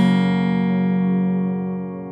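Background music: a single guitar chord, struck just before the start, left ringing and slowly fading.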